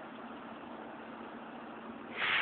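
Steady background hiss with no distinct sound standing out.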